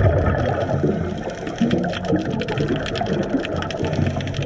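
Underwater recording: a rush of air bubbles rumbles loudest at the start, over a steady crackle of fine clicks and the wash of the water.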